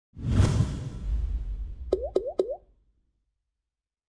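Logo-animation sound effect: a whoosh with a deep low rumble that swells in and fades, then three quick rising bloops about a quarter second apart, each a short upward pitch glide.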